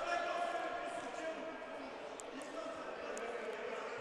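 Faint, echoing sports-hall ambience with distant voices, and a few light ticks near the middle and later on.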